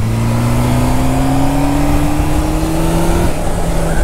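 Honda Hornet motorcycle engine on its stock exhaust, pulling under acceleration. Its pitch climbs steadily for about three seconds, then breaks off with a step down near the end, as at an upshift.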